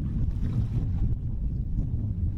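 Wind rumbling on the microphone over open water, with the low steady drone of a vessel underway.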